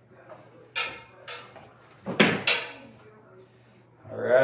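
Fish hook and electrical cable knocking and scraping inside a ceiling cavity as the cable is hooked and drawn through a speaker hole: four short sharp knocks, two close together about two seconds in.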